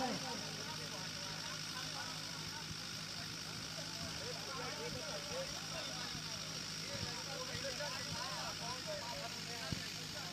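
Faint, distant talking among a group of men, over a steady low hum.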